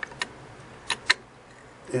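Small sharp metal clicks from a sewing machine's steel bobbin slide plate and its spring clip being worked with a small tool: one click, then two close together about a second in, as the lifted spring corner slips free.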